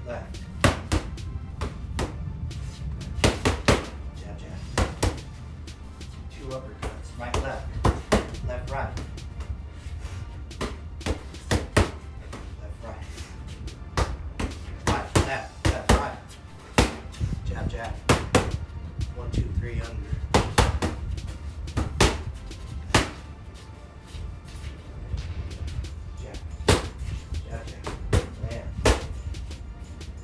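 1v1 Pro Trainer Elite boxing gloves striking focus mitts in quick combinations. The hits are sharp slaps in irregular bursts of one to four, every second or two.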